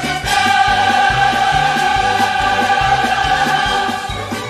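A musical-theatre chorus and orchestra holding one long chord over a steady, pulsing bass beat.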